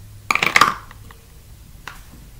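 Handling noise close to the microphone: a short rustling clatter about a third of a second in, then a single faint click near the end.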